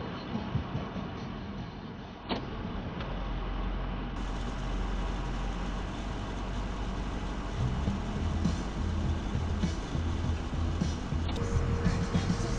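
Ford F-350 pickup truck running and creeping slowly, heard as a steady low rumble from inside the cab, with music playing faintly along with it.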